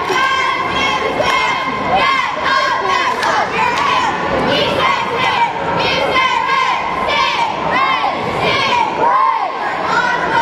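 A squad of young girl cheerleaders shouting a cheer together, high voices calling out in a quick repeated rhythm, with crowd voices around them.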